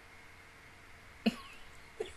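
A woman's single short cough about a second in, sharp at the start and fading within half a second, over faint room hiss.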